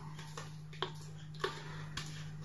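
A few faint, short clicks from the bowl and batter being handled while thick cheesecake batter is poured into a silicone mould, over a low steady hum.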